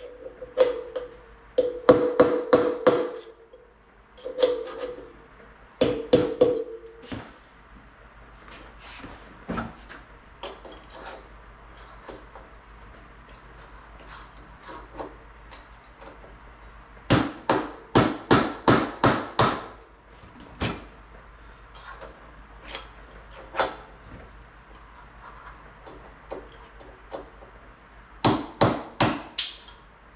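Hammer blows on a punch driving a worn wheel bearing out of a vintage motocross bike's front wheel hub. Runs of quick metal strikes, several a second, come in four groups, with scattered lighter taps between them. The early strikes leave a ringing tone.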